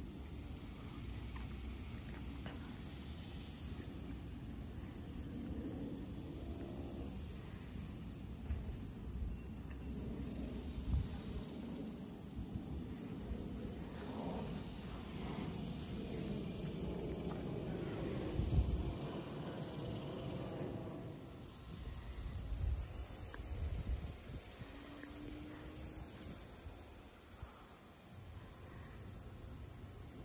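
Storm wind buffeting the microphone, with a few heavier gusts.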